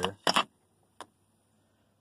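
Two sharp clicks close together, then a single lighter tick about a second in, from pump parts being handled.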